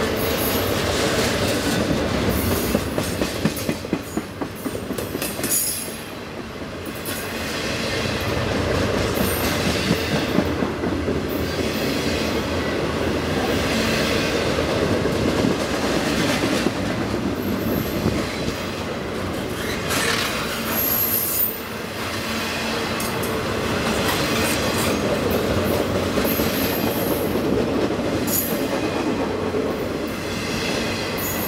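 Double-stack container cars of a freight train rolling past close by, with a steady wheel-on-rail rumble and clatter. Brief high-pitched wheel squeals come and go several times.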